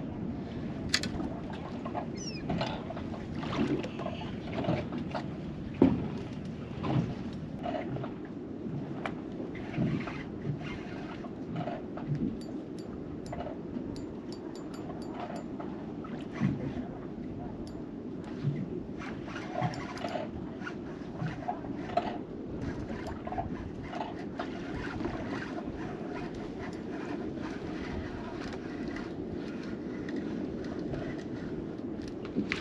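Steady wind noise on the microphone aboard a small boat on open water, with scattered small knocks and clicks throughout. The loudest knock comes about six seconds in.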